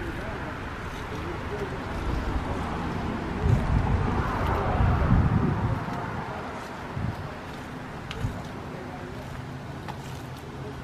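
Outdoor ambience with wind buffeting the handheld microphone, strongest a few seconds in, and a couple of light knocks from handling later on.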